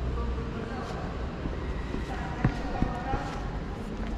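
Indistinct background voices over a steady low rumble, with two sharp knocks a fraction of a second apart past the middle.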